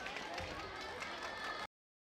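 Table tennis hall ambience: scattered voices, a few short clicks of the ball, and some light clapping. The sound cuts off abruptly near the end.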